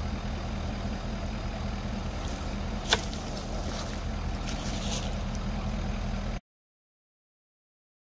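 Ford F-350 pickup idling close by, a steady low hum, with a single sharp knock about three seconds in as the PVC pipe is set down on the ground. The sound cuts off abruptly a little past six seconds.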